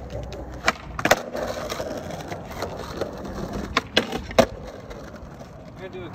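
Skateboard wheels rolling on rough asphalt, with sharp clacks of the board popping and landing: two or three about a second in and another cluster around four seconds, the loudest at about four and a half seconds.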